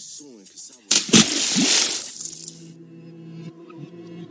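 Splash sound effect of a swimmer diving into a pool: a loud, sudden hissing burst about a second in that lasts about a second and a half, then gives way to steady ambient music.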